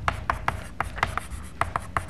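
Chalk writing on a blackboard: a run of sharp, irregular taps with some scratching as letters are chalked up.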